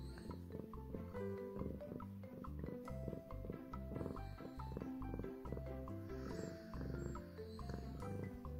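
Soft background music of gentle sustained notes, with a domestic cat purring steadily underneath.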